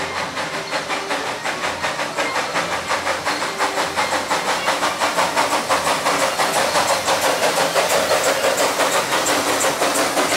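Exhaust chuffs from a 1940 ČKD 0-4-0T narrow-gauge steam tank locomotive working a passenger train, a quick even beat of about four a second that grows louder as the engine approaches and passes.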